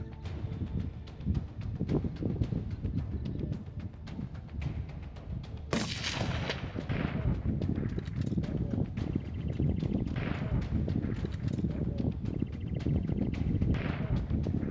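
A single rifle shot from a Savage Predator 110 in .22-250 about six seconds in: a sharp crack whose echo fades away over about a second, over a steady low background rumble.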